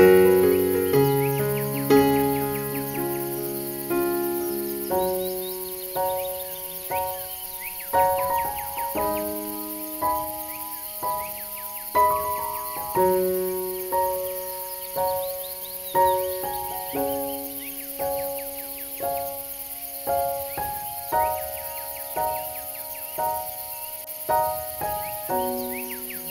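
Slow, calm keyboard music, piano-like, with a new note or chord about every second, each ringing out and fading. Faint bird chirps are mixed in above it.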